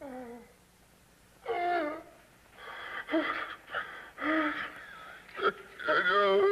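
A man groaning and wheezing: a short falling groan, a longer groan about a second and a half in, then a run of rasping, partly voiced breaths. It is acted as the laboured breathing of a dying man.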